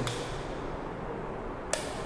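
A wall light switch clicks once, sharp and short, near the end, as the ceiling track spotlights are switched on. Under it is a steady background hiss.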